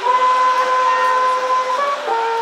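Wind band playing a long held note, doubled at the octave, that moves briefly to a new note near the end.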